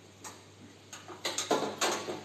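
A series of sharp clicks and taps from hand work on a washing machine's sheet-metal cabinet: a few faint ticks, then a quicker run of louder ones from about a second in.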